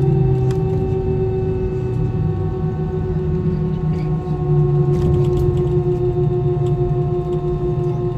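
Airliner turbofan engines running at taxi power, heard from inside the cabin: a steady hum and whine of several tones that slide slightly lower, over a low rumble.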